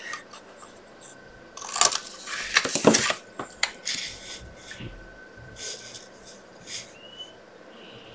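Cardstock strips being handled by hand on a craft mat: a cluster of paper rustles and scrapes about two seconds in, then several shorter rustles, over a faint steady high tone.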